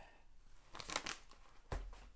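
Crinkling and rustling of a tea pouch being handled as a tea bag is taken out, with a few sharp rustles about a second in and a soft bump near the end.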